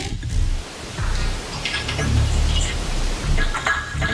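Granular ambient texture from a software pad-and-texture generator built in FL Studio's Patcher: a continuous noisy wash over a low rumble, with scattered grainy flickers.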